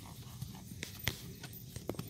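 Hoofbeats of a Tennessee Walking Horse gaiting on grass, with three sharp clicks in the second half.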